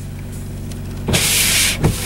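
Car windshield washer spraying and wipers sweeping across a frosted windshield, heard from inside the cabin over the steady hum of the running engine. A loud hiss starts about a second in, then comes a brief thump and more hissing near the end.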